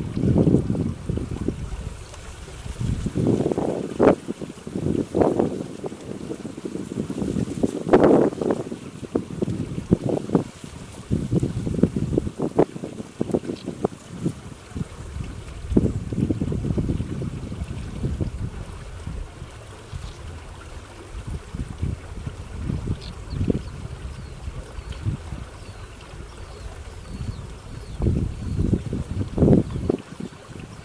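Wind buffeting the microphone in uneven gusts, a low rumble that rises and falls throughout.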